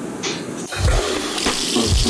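Water rushing, with background music with a beat coming back in about a second in.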